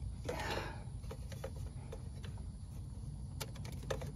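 A few faint, scattered clicks and taps of hard plastic engine-bay parts being handled and prised by hand, with a cluster of sharper clicks near the end, over a steady low hum.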